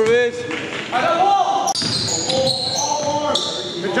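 Sounds of a basketball game in a gym: the ball bouncing, sneakers squeaking on the court, and players calling out.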